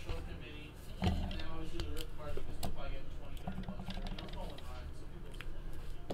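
Quiet handling of a trading card and small items on a tabletop, with a few light clicks, under faint low muttered speech.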